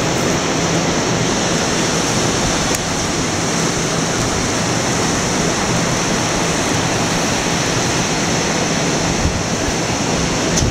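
Ocean surf breaking on a beach, a steady rushing sound, with wind on the microphone.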